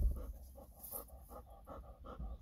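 Golden retriever panting quickly and evenly, about five or six breaths a second.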